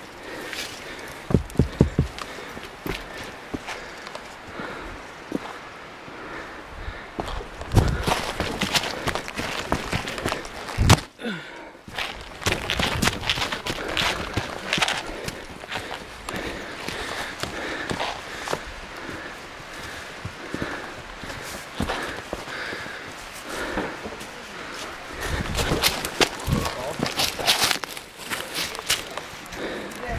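Footsteps of a hiker running uphill over rock and dry leaf litter: irregular thuds and scuffs, with knocks and rattling from the handheld camera.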